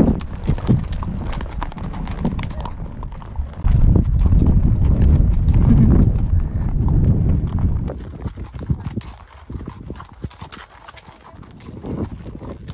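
Haflinger horses walking on a gravel track, their hooves clip-clopping steadily. A loud low rumble covers the hoofbeats from about four to eight seconds in.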